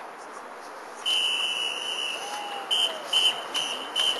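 Drum major's whistle: one long blast about a second in, then a run of short blasts at about two or three a second, the signal counting the band in to start playing.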